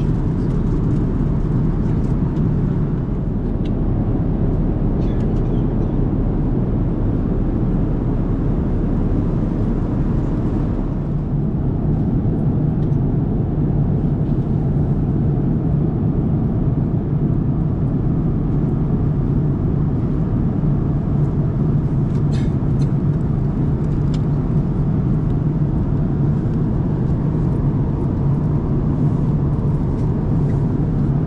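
Airbus A330-900neo cabin noise at cruise: a steady, even rush of airflow and engine drone heard from an economy seat. A few faint taps on the seatback touchscreen come about two-thirds of the way through.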